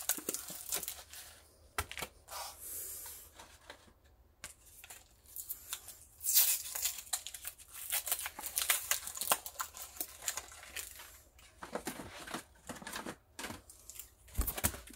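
Foil Pokémon booster pack wrapper and its packaging being torn open and crinkled, in several separate bursts of crackling.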